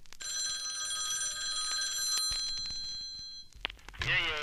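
Bell-like ringing in the soundtrack: several steady high tones held together for about three seconds, then fading away.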